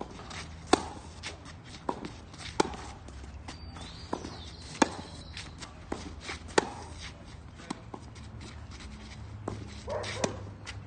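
Tennis balls struck by racket strings in a baseline rally on a clay court: sharp pops, the loudest about every two seconds from the near player's strokes, with fainter hits from across the net in between. Footsteps shuffle on the clay between the strokes.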